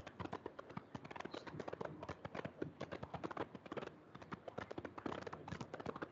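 Faint, rapid, irregular light clicks and taps, several a second, like keys or buttons being pressed.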